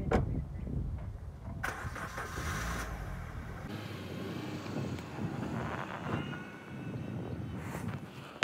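A car door shuts with a knock, then about two seconds in a Maruti Suzuki Swift's petrol engine starts and runs.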